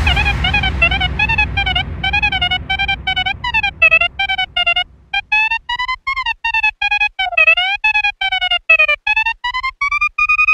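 Hardstyle breakdown: the kick drums drop out and a high synth lead plays a melody of short, choppy notes that bend up and down in pitch. There is a brief gap about halfway through, and the notes are held longer near the end.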